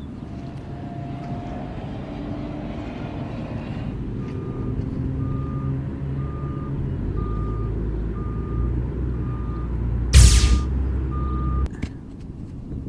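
Sci-fi sound effect of a time-travel arrival: a row of evenly spaced electronic beeps, a little over one a second, over a low rumble that deepens and grows louder. A loud burst comes about ten seconds in, and then it all cuts off abruptly.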